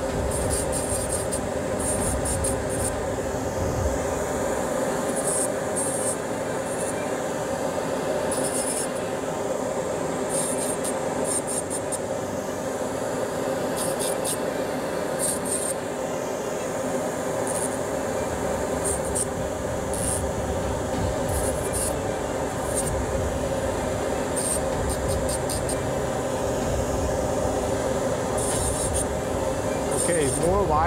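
Dental lab micromotor handpiece running steadily with a thin cutting disc, grinding into the acrylic (PMMA) prototype teeth in repeated short rasping strokes as it sections the embrasures between them.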